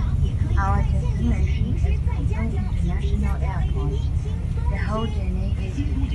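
A voice talking over the steady low rumble of a moving bus, heard from inside the passenger cabin.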